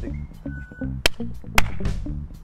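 Background music with a steady beat, with two sharp clicks about a second and a second and a half in.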